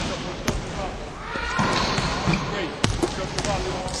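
A basketball bouncing a few times on a hardwood gym floor, sharp irregular thuds, with indistinct voices in the gym behind it.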